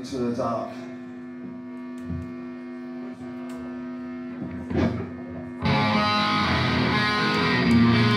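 A held electric guitar chord ringing steadily through the amp, with a man's voice briefly at the microphone near the start and again about five seconds in. Just before six seconds the full heavy metal band comes in loudly with distorted guitars and drums.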